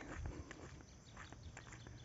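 Faint footsteps on a dirt road, heard as a few light scattered steps over quiet outdoor background noise.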